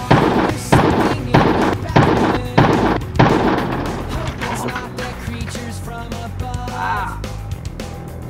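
Loud rock soundtrack music. It opens with six evenly spaced heavy hits, like stabbed chords with crashes, about 0.6 seconds apart, then carries on more quietly.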